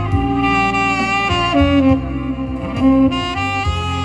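A saxophone playing a slow melody of long held notes over a steady bass accompaniment.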